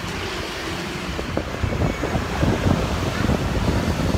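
Irregular low buffeting on the phone's microphone over a steady background of street traffic.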